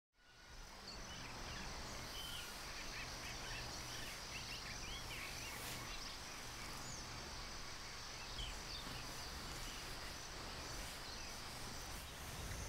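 Faint outdoor ambience fading in over the first second: a steady high insect drone, short scattered bird chirps in the first half, and a low steady hum beneath.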